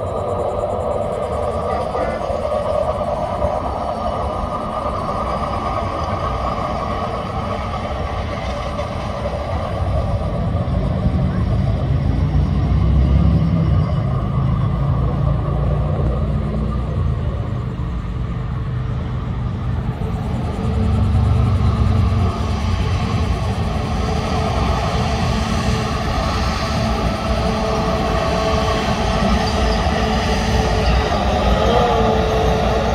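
Diesel engines of rail-mounted track maintenance machines running as they approach over the bridge: a steady low rumble that swells louder twice, around the middle and about two-thirds of the way in.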